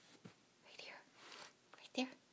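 Faint whispering, two short breathy phrases, followed at the very end by a brief sharp knock.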